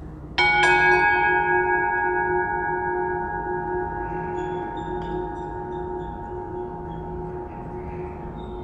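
A struck altar bell rings at the elevation of the chalice after the consecration. It is hit twice in quick succession about half a second in, then left ringing with several clear tones that slowly die away.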